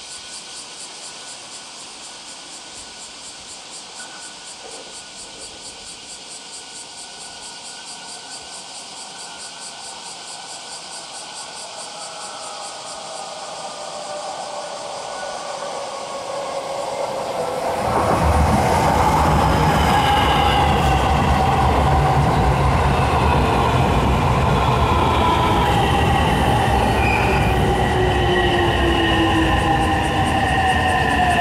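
JR West 225-series 100-subseries electric train approaching and braking to a stop. A rumble of wheels on rail grows slowly, then gets much louder about two-thirds of the way in as the train draws alongside. Several whining tones glide down in pitch as it slows.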